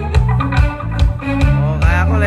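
Live band playing a reggae song, an electric guitar carrying the melody over a steady bass line.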